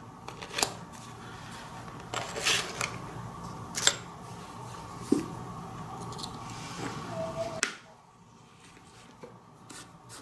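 Handling sounds of a Maglite flashlight being reassembled: clicks and a short rattling clatter as the 18650 cell in its 3D-printed adapter goes into the aluminium body. Near the end, faint small clicks as the spring tail cap is screwed back on.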